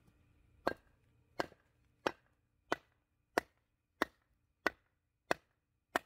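A wooden club striking the back of a froe blade, driving it down into a birch log to split it. The strikes come as about nine even knocks, roughly one and a half a second.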